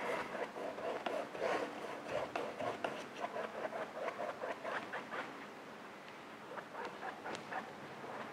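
Paintbrush scrubbing and dabbing acrylic paint onto stretched canvas: soft, irregular scratchy strokes that thin out about six seconds in and pick up again near the end.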